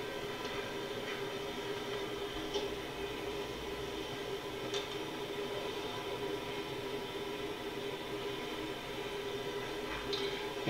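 Steady background hum with an even noise bed and a few faint clicks.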